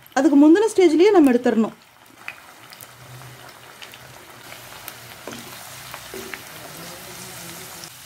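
Boiled, drained elephant yam cubes deep-frying in hot oil in a kadai: a steady sizzle with a few faint crackles and clicks. They are being fried only lightly, not to the crisp, fully roasted stage.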